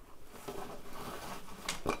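Hands handling a fabric ironing-board cover and pins: soft, irregular rustling and scuffing, with a couple of light knocks near the end.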